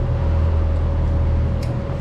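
A steady low mechanical hum, like a motor running, with a faint steady higher tone over it. A single light click near the end, from the Allen key working the cable clamp bolt on a mechanical disc brake caliper.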